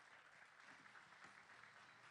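Near silence: a faint, even hiss between speeches.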